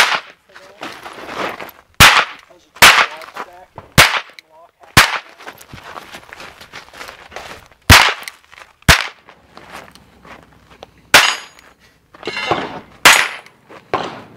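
A Smith & Wesson Model 1 Second Issue tip-up revolver firing .22 Short CB rounds: about nine single shots, one to three seconds apart.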